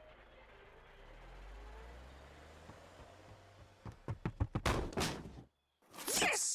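Faint fading background music, then a rapid run of about ten thumps over a second and a half, getting louder and cutting off suddenly.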